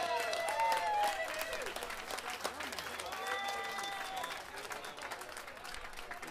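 Audience clapping and cheering after a song ends, with long high whoops at the start and again about three seconds in; the clapping thins out toward the end.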